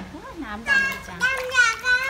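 Speech only: a woman says a few words, then a young child's high-pitched voice, held and drawn out, takes over from about halfway in.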